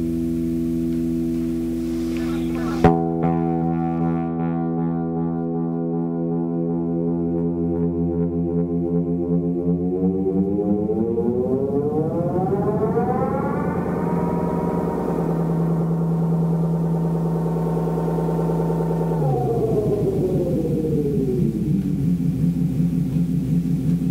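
DOD FX-90 analog delay pedal (MN3005 bucket-brigade chip) in self-oscillation, its echoes feeding back into a sustained, siren-like droning tone. There is a click about three seconds in. About ten seconds in, the pitch glides smoothly up as the knobs are turned, holds, and then slides back down near the end.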